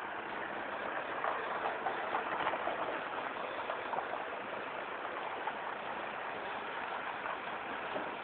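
A truck idling with a steady engine noise, with a few faint ticks in the first few seconds.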